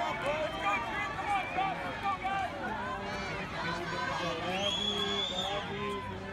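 A crowd of spectators cheering and talking, many voices overlapping. One high held note comes in about four and a half seconds in and lasts about a second.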